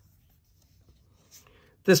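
Faint rustle of a hand brushing across the paper pages of an open book, about a second and a half in, then a man starts speaking near the end.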